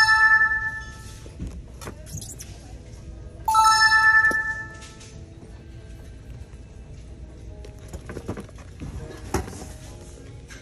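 A bright electronic chime sounds twice, at the start and again about three and a half seconds in, each ringing for over a second. Between and after the chimes there is low store background noise with a few light knocks of handling.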